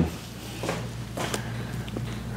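Quiet room with a steady low hum and a few faint rustles and soft ticks as a woman lying face down lifts her leg off a padded table.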